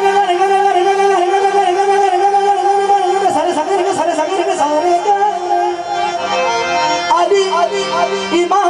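Live qawwali: a male lead voice holds one long note for about three seconds, then moves into quick ornamented runs, over a steady harmonium accompaniment.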